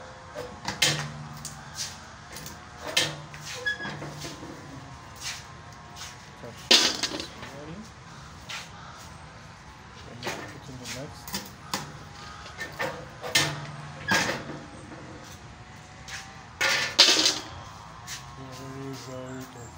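Hand-operated cashew deshelling machine clacking as nuts are loaded and its spring-loaded blades are worked to split the shells: irregular sharp clicks and knocks, with louder clacks about seven seconds in and near the end.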